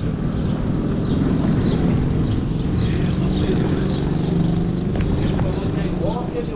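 A motor vehicle's engine running close by in street traffic, with a steady low hum strongest in the middle seconds, and people's voices in the background.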